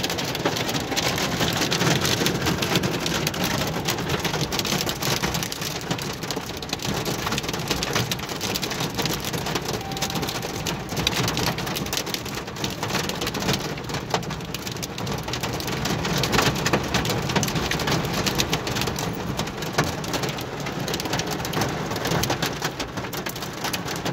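Hail and heavy rain pelting a car's roof and windshield, heard from inside the car as a dense, steady clatter of small impacts.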